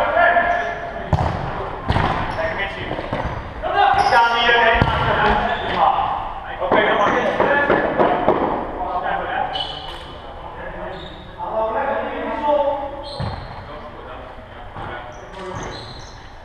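Voices calling out in an echoing sports hall, with a few sharp thuds of a ball on the floor.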